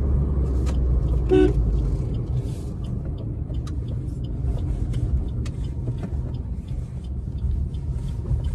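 Cabin sound of a Maruti Suzuki Baleno petrol hatchback on the move: a steady low engine and road rumble, whose deeper engine hum drops away after about a second and a half. A short toot-like tone sounds about a second and a half in.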